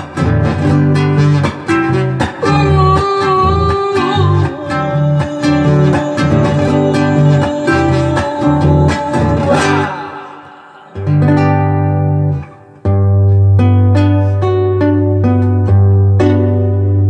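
Acoustic guitar playing a rhythmic strummed and plucked passage that fades about ten seconds in, followed by a brief pause and then a couple of chords left to ring out to a close.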